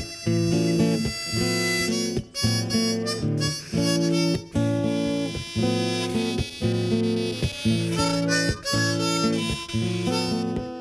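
Harmonica playing chords in a steady rhythm over a guitar, in an instrumental intro.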